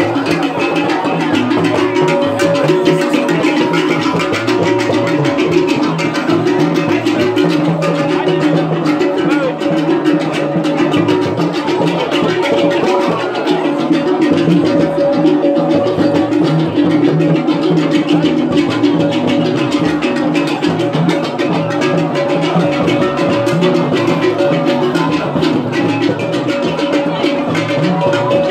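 Loud, continuous percussion-led music with drums and rattles, keeping an unbroken rhythm.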